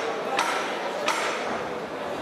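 Two sharp knocks about two-thirds of a second apart, each with a short ring, over the steady background noise of a boxing hall.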